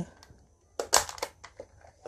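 Hard plastic parts of a DX Goseiger toy robot's red dragon piece clicking as a section is opened: a quick cluster of a few sharp clicks about a second in.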